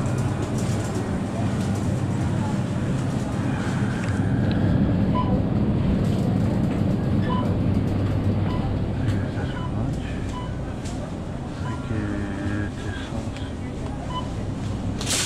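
Busy supermarket ambience: a steady low hum from open refrigerated display cases under a murmur of shoppers' voices. From about a third of the way in, short faint beeps repeat roughly once a second.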